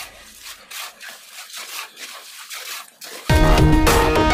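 Shovels scraping through wet concrete mix in irregular rasping strokes. Background music fades away at the start and comes back in loudly after about three seconds.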